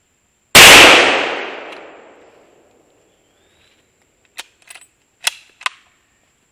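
.30-06 scoped deer rifle firing a single shot about half a second in, the report dying away over about two seconds. Near the end come a few short, sharp metallic clicks as the rifle's action is worked.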